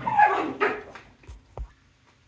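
A dog barks twice in quick succession. Two soft thumps follow.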